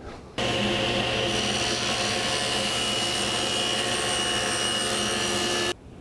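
Table saw running with an Infinity Super General 10-inch, 40-tooth blade cutting veneered plywood: a steady whine with a high ringing tone. It starts suddenly about half a second in and cuts off suddenly near the end.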